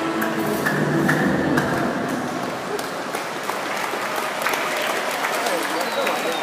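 The last notes of the programme music fade in the first second, then scattered audience applause with crowd voices in the background.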